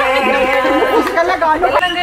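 Several voices chattering over one another. Near the end a voice starts singing, holding a long steady note.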